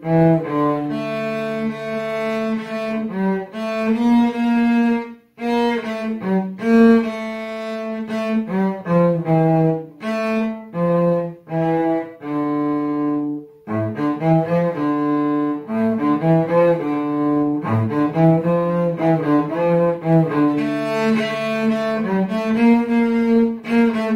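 Solo cello played with the bow: a melody of mostly sustained notes, with short breaks about five seconds in and again past the middle.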